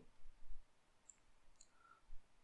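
Faint computer mouse clicks, two of them in the first half second.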